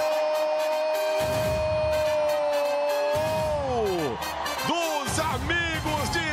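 Football TV commentator's drawn-out goal shout, held on one pitch for about four seconds and then falling away, followed by more excited commentary, with a dense low rumble underneath from about a second in.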